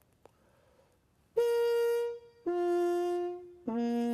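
Trumpet played with a Harmon mute in the bell: three long held notes, each lower than the last, starting about a second and a half in. The tone is very quiet, sort of brassy.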